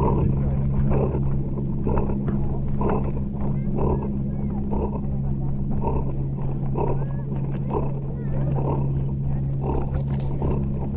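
Bernese mountain dog panting hard through a stick held in its mouth, right at the microphone, about one to two breaths a second. A steady low hum runs underneath.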